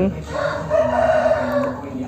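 A rooster crowing once: one long call lasting about a second and a half.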